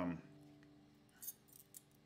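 A few faint, small metallic clicks as metal picks are handled and slipped onto the fingers, over the faint ringing of the resonator guitar's strings dying away.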